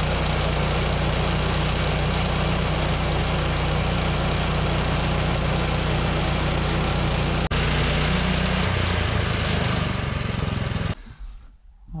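Woodland Mills HM126 portable band sawmill with its 14 hp engine running steadily at speed. There is a brief break about seven and a half seconds in, and the engine note drops lower about a second later. The sound falls away suddenly about a second before the end.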